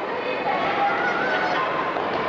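Spectators in the stands calling out and laughing, voices rising and falling in pitch over steady crowd noise.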